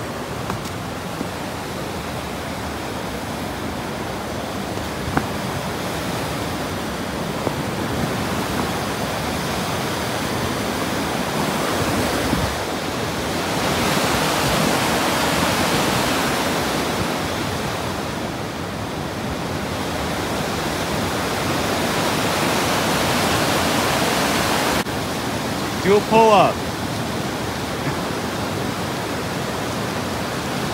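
Steady rush of a river's white-water rapids and falls, swelling louder in the middle and dropping suddenly about 25 seconds in. A brief voice cuts through near the end.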